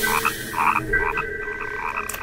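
Frogs croaking in short, repeated pulses, with a steady high tone joining about a second in.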